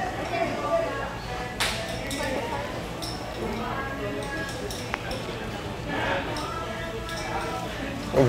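Faint background chatter of other people's voices, with a couple of short, light clicks or clinks.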